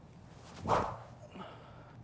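SuperSpeed Golf training stick swung at full speed, one short whoosh through the air that swells and dies away just under a second in.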